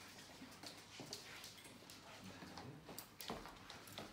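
Near silence: room tone with a few faint, scattered clicks and knocks.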